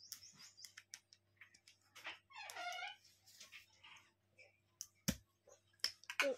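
Faint scattered clicks and taps of a plastic toy knife and toy fruit pieces. About two and a half seconds in there is a short high vocal sound that falls in pitch, and a sharp click comes about a second before the end.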